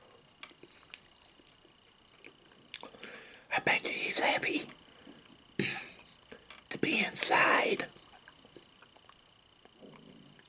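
A man whispering close to the microphone in two short spells, a few seconds in and again past the middle. Faint clicks and smacks of eating fried chicken come before and after.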